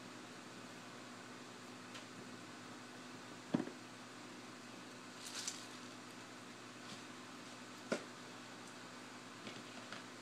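Quiet kitchen room tone with a faint steady low hum, broken by two short knocks and a brief rustle.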